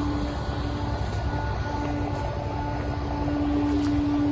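Steady low mechanical rumble with a constant hum, which drops out briefly twice.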